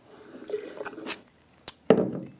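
Wine spat into a tasting spit pitcher: a short wet spatter and dribble of liquid, then a sharp knock near the end as the pitcher is set down on the table.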